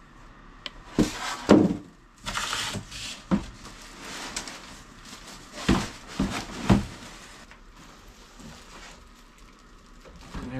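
Unpacking a boxed miter saw: the styrofoam packing insert and cardboard box scraping and knocking, with the plastic-wrapped saw being handled. A run of sharp knocks and scrapes over the first seven seconds gives way to quieter handling near the end.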